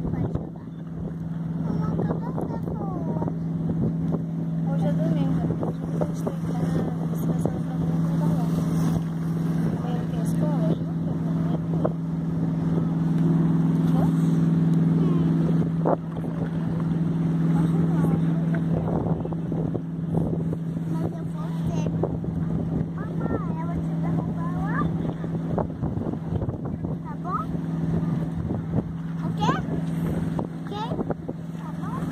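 A boat engine running with a steady low hum, under faint indistinct voices of people talking.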